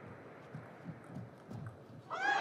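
Table tennis rally: faint hollow knocks of the celluloid ball off bats and table in a quick irregular rhythm, with low thumps from the players' footwork on the court floor.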